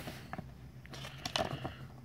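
Faint rustling and a few light clicks of a small paper insert card being handled and turned over in the hands.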